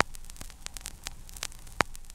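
Crackling static: a steady hiss over a faint low hum, broken by irregular sharp clicks and pops, with a strong pop near the end.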